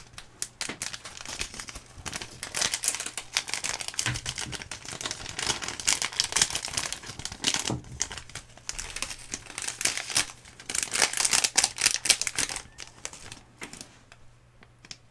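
Plastic foil sachets of Samyang spicy chicken ramen sauce and flakes crinkling and tearing as they are handled, opened and shaken out by hand. The crackling comes in dense bursts, loudest a few seconds in and again near the end.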